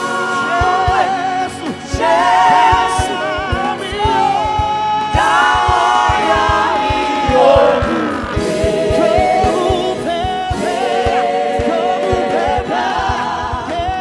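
Live gospel worship music: a vocal group singing together, with the lead voice holding long notes, over a low steady beat.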